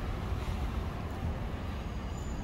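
Steady low rumble of outdoor background noise, with no distinct event.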